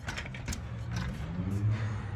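A car engine running and revving a little in a parking lot, its low hum rising and falling in pitch, with a single sharp click about half a second in.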